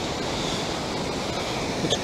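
Steady wash of ocean surf on a beach.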